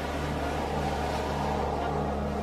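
Steady rushing wash of ocean surf under a low, sustained background-music drone.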